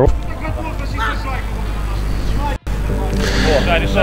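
Outdoor match ambience from the camera microphone: a steady low rumble with faint, distant voices of players on the pitch. The sound cuts out abruptly for an instant about two and a half seconds in, where the footage is edited.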